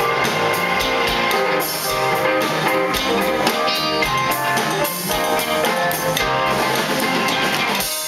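Live rock band playing full out: drum kit, electric guitars, bass, organ and keyboards together, with regular drum hits under sustained chords.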